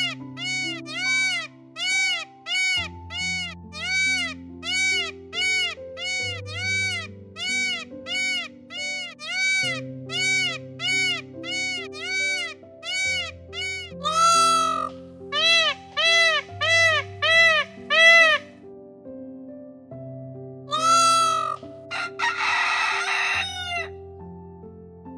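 Peacock calling over and over in short rise-and-fall cries, about two a second, then a few longer, louder calls in the second half. Near the end a rooster crows. Soft background music with sustained chords plays underneath.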